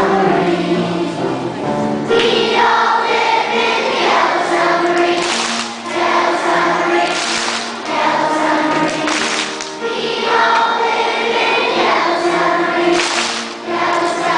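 A class of young children singing together in unison, in sung phrases with brief breaths between them.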